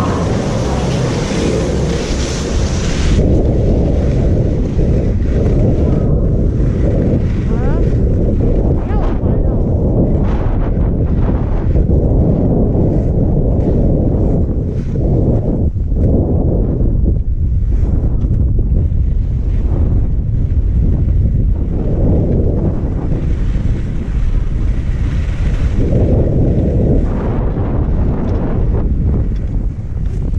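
Wind buffeting a helmet-mounted GoPro's microphone, a loud low rumble that rises and falls, while skiing slowly over snow. For the first three seconds a brighter hiss rides on top, then it stops abruptly.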